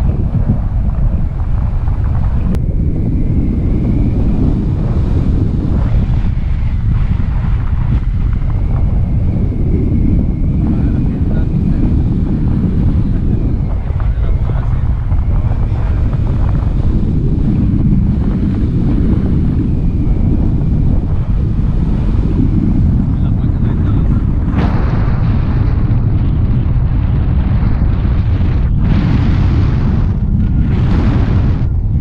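Airflow during a paraglider flight buffeting the microphone of a pole-mounted action camera: a loud, steady rumbling wind noise that turns harsher and brighter about twenty-five seconds in.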